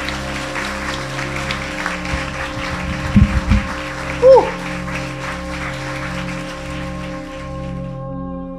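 Audience applauding over soft background music of long held tones. A few louder knocks come about three seconds in, and a short falling shout a second later. The clapping thins out toward the end.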